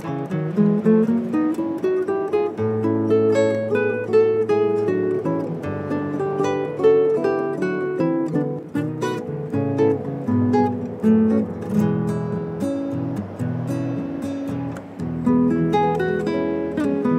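Two nylon-string classical guitars playing a duet: a quick plucked melody over plucked bass notes.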